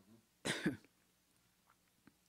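A single short cough about half a second in, a sharp burst of breath with a second push at its end.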